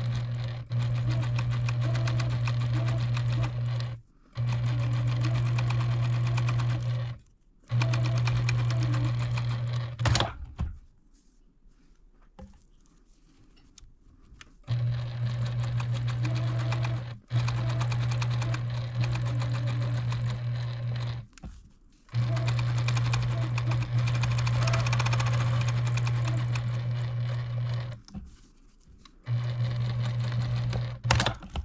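Electric sewing machine stitching in runs of a few seconds with a steady motor hum, stopping briefly between runs and pausing for about four seconds near the middle. It top-stitches a narrow folded fabric strip, then sews around a padded fabric leaf piece.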